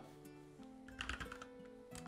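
Computer keyboard keys being typed, a short run of keystrokes about a second in, over soft background music with held notes.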